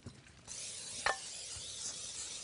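Aerosol cooking spray hissing steadily into a baking dish, starting about half a second in, with one sharp click partway through.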